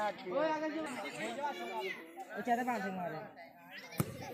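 Several boys' voices chattering and calling at once, overlapping. At the very end comes a single short thud of a football being kicked.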